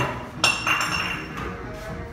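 A glass clinks about half a second in and rings briefly, over bar background music.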